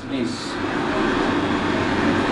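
Steady rushing mechanical noise, even in level throughout, following a single spoken word at the start.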